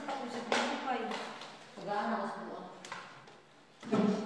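Indistinct conversation among several people, with a few sharp knocks, one about half a second in, one near three seconds and one just before the end.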